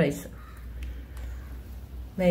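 A pause between spoken phrases that holds only a low, steady background hum and a couple of faint ticks about a second in.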